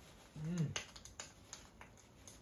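A man's short hummed "mm" that rises and falls in pitch, followed by a few light, sharp clicks.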